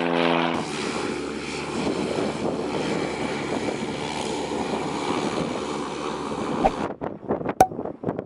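Cessna Caravan single-engine turboprop running on the runway: a steady engine-and-propeller drone that cuts off abruptly about seven seconds in.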